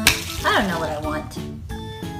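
A plastic cheese-wedge game spinner flicked by hand, with a sharp click as it is struck, over steady background music.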